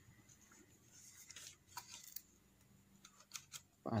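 Faint scraping and light clicks of fingers handling the plastic fittings and foam padding inside a bicycle helmet, a few soft rubs about a second in and again near the end.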